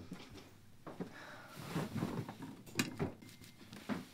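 Faint rustling of bedding as someone sits down on a bed, with a sharp click about three seconds in from a bedside lamp's switch being turned off.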